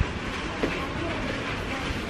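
Shopping cart rolling along a supermarket floor: a steady rattling rumble of its wheels and wire basket.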